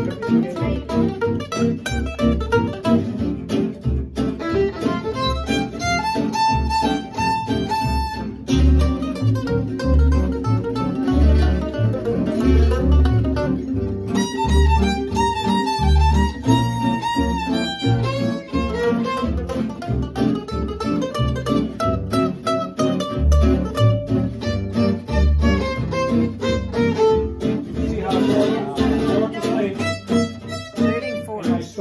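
Small gypsy jazz string band playing live: acoustic guitars and upright bass keep a steady strummed rhythm while violin and other soloists trade short improvised four-bar phrases (trading fours).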